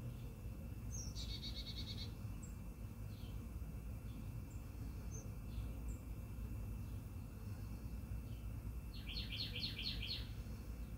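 Songbirds chirping in the background: a quick run of repeated chirps about a second in, a few scattered single high notes, then a run of falling chirps near the end. A low steady rumble and a faint steady high tone run beneath.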